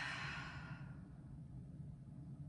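A woman's deep, audible breath out, a sigh-like exhale taken deliberately while holding a yoga pose, fading away about a second in. After it there is only a faint, steady low hum.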